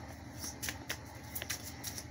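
A deck of oracle cards being hand-shuffled: a handful of irregular, sharp card clicks and flicks.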